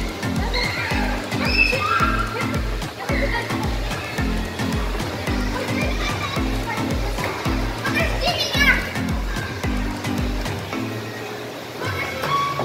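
Children playing and calling out, with one brief high squeal about two-thirds of the way through, over music with a steady bass beat that stops near the end.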